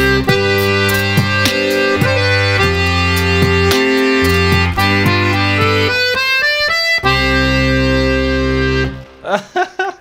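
Bayan (Russian chromatic button accordion) playing a melody over sustained bass chords, with a quick run of high notes around six seconds in and a final held chord that stops about nine seconds in. Brief laughter follows.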